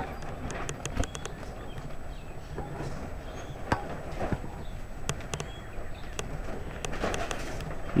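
A loose piece of plastic flapping, heard as irregular light clicks and ticks over a low steady rumble.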